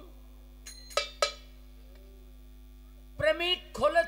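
Steady electrical hum from a sound system in a pause, broken about a second in by three sharp, ringing metallic strikes. A man's voice at the microphone comes back near the end.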